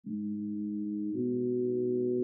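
Opening of an instrumental beat: soft, sustained low chords with no drums, moving to a new chord a little over a second in.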